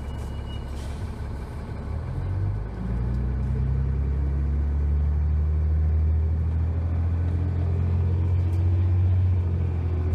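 Cummins ISC inline-six diesel of a New Flyer D30LF transit bus idling, then about two to three seconds in revving up and pulling away, its note climbing and growing louder as the bus accelerates.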